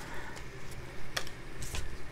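Tarot cards being handled: a card is drawn and laid on the table, with a few light clicks and taps, the sharpest just after a second in.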